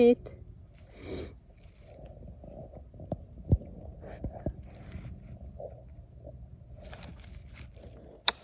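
Faint rustling and handling noises on the forest floor, with a few short soft clicks in the middle and a louder rustle near the end, as a porcini is handled among moss and leaf litter.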